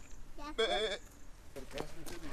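A goat bleating once, a short call with a wavering pitch about half a second in.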